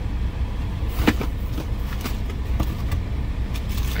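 Low steady rumble of a car heard from inside the cabin, with a few clicks and rustles as a cardboard shoebox lid is opened and the paper inside is handled.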